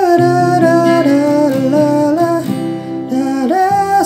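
Acoustic guitar strumming the chord progression of the song's refrain, with a low bass note held under most of it. A wordless hummed melody, sliding between notes, rides along with the chords.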